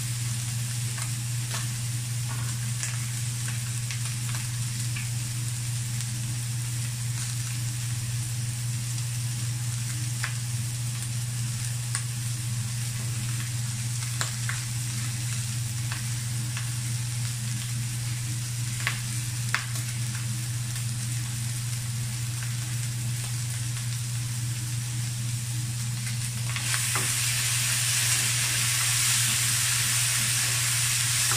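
Ground pork with tomato and onion sizzling in a non-stick wok, with scattered small pops, over a steady low hum. Near the end the sizzle grows louder as the mixture is stirred with a spatula.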